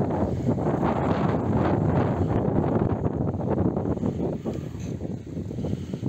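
Wind buffeting the phone's microphone: a loud, uneven low rumble.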